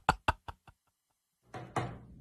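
A man's laughter trailing off in quick, short pulses that fade out within the first second, followed by two brief sharp sounds about a second and a half in.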